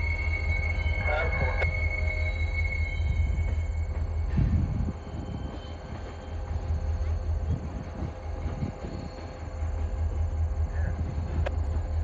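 Freight cars rolling down a rail yard hump at a distance: a steady low rumble, with a high, steady squeal that ends about three seconds in. The sound drops in level about five seconds in.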